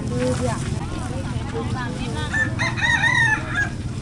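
A rooster crowing once, a single drawn-out call of a little over a second starting about two and a half seconds in, over a low background rumble and faint market chatter.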